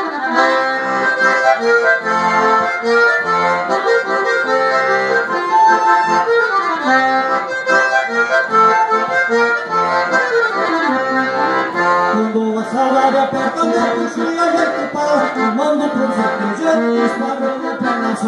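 Solo accordion playing an instrumental passage of a gaúcho song, live through a PA, with melody over pumping bass chords. It plays two quick descending runs in the middle.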